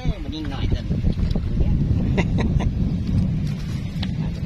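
Wind buffeting the microphone: a heavy, steady low rumble. A few short sharp clicks come about two seconds in.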